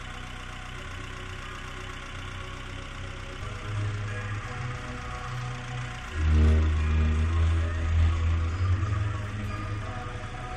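Bass-heavy music played through a car audio system with a Pioneer TS-W305C subwoofer, heard from outside the closed car, the deep bass dominating. The bass gets much stronger about six seconds in.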